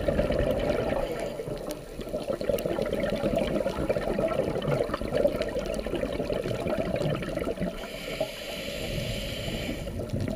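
Underwater ambience picked up by a dive camera: a dense, muffled wash of water noise with fine crackling. Near the end, a brighter hissing layer comes in over it.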